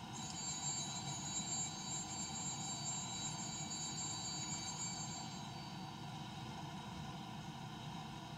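An altar bell rung at the elevation of the chalice: a single high, clear ring lasting about five seconds, over the hush of a silent congregation in a church.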